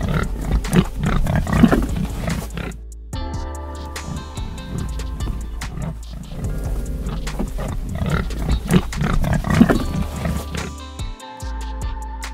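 Recorded pig calls, heard in two bursts, one in the first few seconds and one again about eight seconds in, over steady background music.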